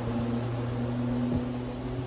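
A steady low hum under an even hiss, with one faint knock about a second and a half in.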